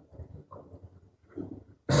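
Faint, muffled voice-like murmurs in a quiet room. Near the end a man's amplified voice starts loudly through a microphone, opening with "Bismillahirrahmanirrahim".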